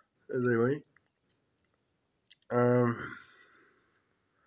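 A man's voice close to the microphone making two short murmured sounds, the second held and trailing off, with a few faint mouth clicks between them.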